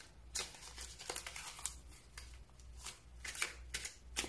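Tarot cards being shuffled and handled by hand: faint, irregular crisp flicks and rustles of card stock, several to a second, over a low steady hum.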